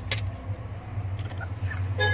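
A steady low hum, with a couple of brief clicks right at the start.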